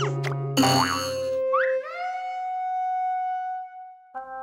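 Cartoon music with springy boing sound effects: quick up-and-down pitch swoops in the first half-second, then a rising swoop about one and a half seconds in that settles into a held note and fades out just before the end.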